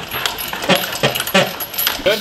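Metal lifting chains clinking and jangling in several separate clinks as a hoist lowers an engine on them, over a thin steady high whine that stops near the end.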